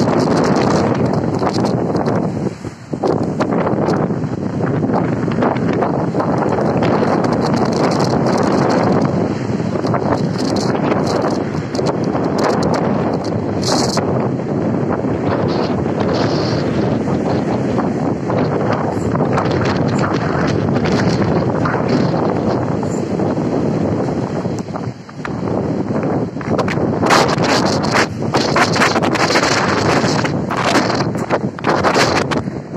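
Strong storm wind buffeting the microphone over the rush of heavy surf breaking on a pebble shore. The wind eases briefly twice, about three seconds in and again about five seconds before the end, then gusts harder near the end.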